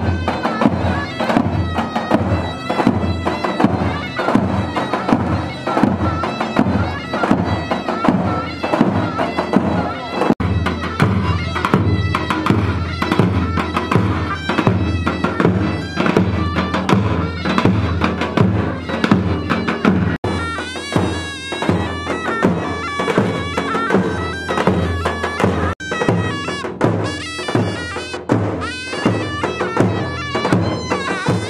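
Davul and zurna playing a folk dance tune: a shrill, reedy double-reed melody over a steady, evenly repeating bass drum beat. The music breaks off and picks up again abruptly a few times.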